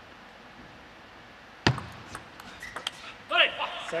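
A short table tennis rally in a large hall: a loud, sharp hit about a second and a half in, then several quick clicks of the plastic ball off bat and table, and a brief shout near the end as the point is won.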